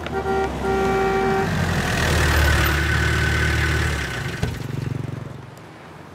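Vehicle horn sounded twice, a short toot then a longer one, followed by engine and tyre noise that swells and then fades as a police jeep drives up and stops. A single thump comes about four and a half seconds in.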